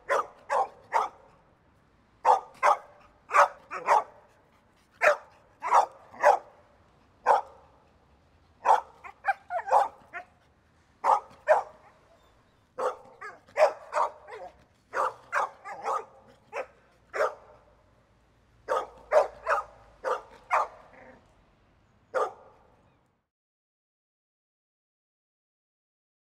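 Medium-sized dog barking repeatedly, in quick runs of two to four sharp barks with short pauses between.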